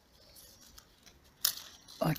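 Apricot leaves and twigs rustling faintly as a hand moves through the branches, with one short, sharp crackle about one and a half seconds in.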